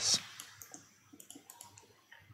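A few faint, short clicks from computer input, mouse or keys, as the Grasshopper canvas is worked.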